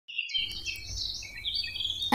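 Small birds singing, several high chirping and whistled notes overlapping, starting abruptly a moment in.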